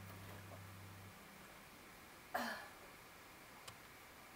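Quiet room with a low steady hum that stops about a second in, then a single short throat clearing a little past halfway.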